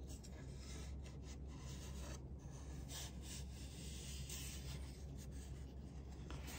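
Faint, irregular rubbing and light scraping of a thin wooden mandolin rim and its cardboard form being handled and turned over, over a low steady hum.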